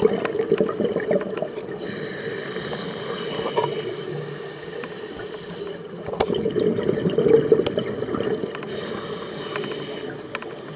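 Scuba regulator breathing underwater: two long rushes of exhaled bubbles, one at the start and one from about six seconds in, with quieter hissing between them.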